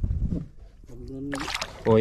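Water and handling noise on a small outrigger fishing boat as a hooked needlefish is hauled in on a float line, with a short hissing rush near the end and a man's drawn-out excited 'oh'.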